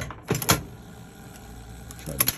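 Metallic clunks and rattles from the mechanism of a 1939 ABT Fire and Smoke penny arcade target-pistol game, sharpest about half a second in, followed by a quieter, steadier mechanical run.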